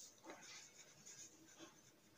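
Pen writing on paper: a run of faint, short scratching strokes of handwriting.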